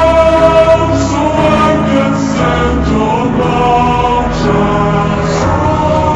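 Music: a choir singing long held notes in harmony over a steady low bass accompaniment.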